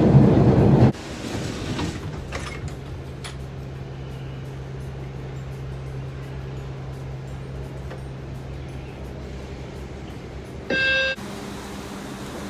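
Loud subway train noise that cuts off abruptly about a second in. A quieter steady hum with a low steady tone follows, and a short electronic beep sounds near the end.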